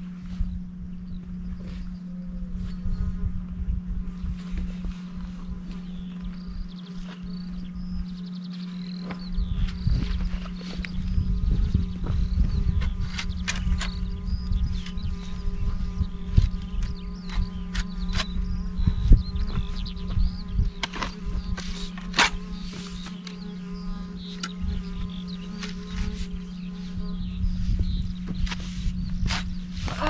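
Shovel digging a pit in soil: irregular chops and scrapes of the blade, the loudest strikes in the second half, over a steady low hum.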